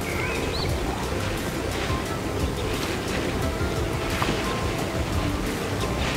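Steady outdoor wash of wind and water lapping, with faint background music under it.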